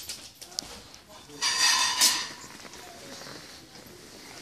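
Wrapping paper on a gift box being picked at and torn by small hands, with a short loud rip about a second and a half in and light crinkling around it.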